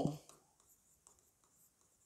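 Faint scratching of chalk as words are written on a blackboard.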